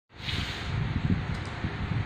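An electric standing fan running, mixed with road traffic that includes trucks: a steady rushing noise over an uneven low rumble.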